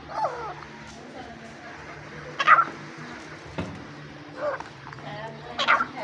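Young partridges (Irani teetar) giving short, sharp calls, four in all; the loudest come about two and a half seconds in and near the end. A steady low hum runs underneath.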